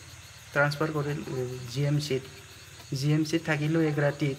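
A man speaking Assamese in a calm interview voice, over a steady chirring of crickets in the background.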